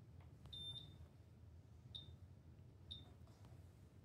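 Three short, high electronic beeps about a second apart, the first a little longer, from the digitizer tablet registering points as the pen stylus enters the fold lines. Faint clicks between them over near-silent room tone.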